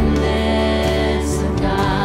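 Live worship band music: acoustic guitar, bass and drums holding a chord, with a voice singing in near the end.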